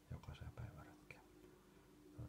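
Soft, low speaking or whispering in the first half second or so, then near silence with only a faint steady hum.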